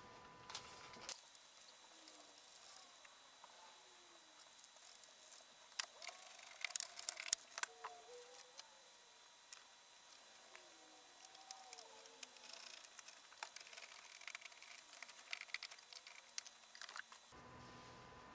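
Faint scattered clicks and handling noises from hands fitting small battery-management circuit boards and wires onto a lithium cell pack. The clicks are sharpest and most frequent about 6 to 8 seconds in.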